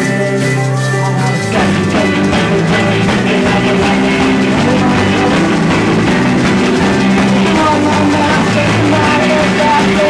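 Indie rock band playing live. A sparser passage of held notes opens out about a second and a half in, when the rest of the band comes in and the sound fills out down into the bass.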